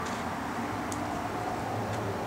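Steady low room noise, a faint even hiss and hum, with one faint click about a second in.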